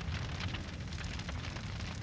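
Fire crackling over a steady low rumble: the burning-wreckage sound effect from the music video's closing scene.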